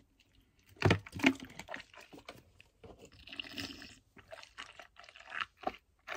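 Small mouth noises picked up close on a studio microphone: wet lip smacks and tongue clicks, loudest about a second in, then scattered and fainter.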